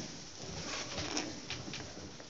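Faint room tone of a seated audience in a small room, with a few soft clicks.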